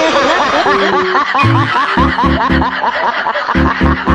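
A snickering laugh: a rapid, evenly spaced run of short rising 'heh' sounds, over background music with a thumping beat that comes in about halfway through.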